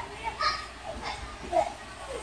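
Children playing: short bits of children's chatter and calls with no clear words, two louder calls about half a second in and near the end.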